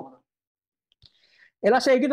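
A man speaking, who breaks off briefly. In the pause there is only a faint click, about a second in, before the voice comes back loudly.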